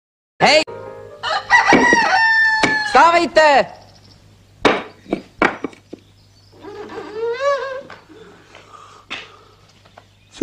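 A rooster crowing loudly near the start, its long held final note, followed by a few sharp knocks and a second, fainter crowing call later on.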